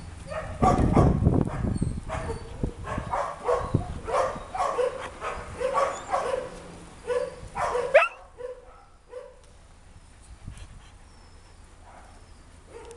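Dogs barking and yipping in short, repeated calls, ending with a sharp rising yelp about eight seconds in, after which only an occasional call is heard. A low rumble runs under the first couple of seconds.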